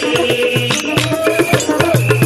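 Diola traditional music: drums beating in a steady rhythm with shaken rattles, over a held, wavering melodic line.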